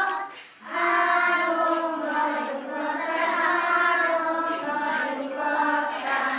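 A group of young children singing a song together, with a short break about half a second in before the singing resumes.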